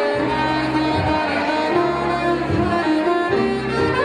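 Saxophone playing a Christmas tune in held, melodic notes over an accompaniment with a low bass line that changes about once a second.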